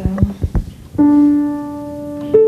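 Grand piano: a single note struck about a second in and left to ring, slowly fading, the first note of an improvisation. Before it come a few short knocks.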